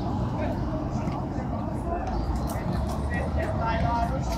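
Open-air ambience with distant, indistinct voices over a steady low rumble.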